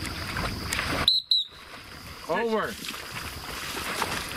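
A retriever splashing through shallow marsh water on a retrieve. About a second in come two short, high, steady-pitched whistle blasts, typical of a dog-handling whistle, and a man calls 'Over', a casting command to the dog.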